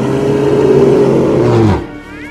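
A brown bear roaring: one long, loud roar that drops in pitch and dies away just before the end.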